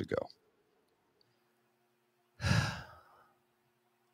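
A man's single heavy, exasperated sigh with some voice in it, about two and a half seconds in, trailing off.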